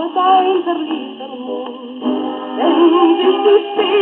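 A 1941 shellac 78 rpm record playing on an old record player: a woman singing in German with a wide vibrato over accompaniment. The sound is thin and narrow, with no deep bass and no top.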